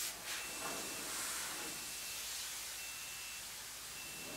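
Steady airy hiss of a compressed-air paint spray gun in a paint booth, with a faint high tone that comes and goes.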